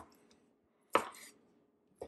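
A Nakano santoku knife chopping through raw chicken breast onto a plastic cutting board: one sharp chop about a second in, with a lighter knock right after.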